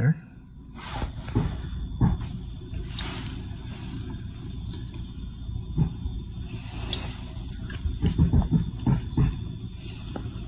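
Small, scattered metal ticks and scrapes as a slightly magnetic pick sets a valve keeper into the groove of a compressed valve stem on a Miata BP cylinder head. A steady low hum runs underneath.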